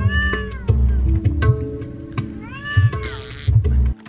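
A sphynx cat meowing twice, each meow rising and then falling in pitch, over background music.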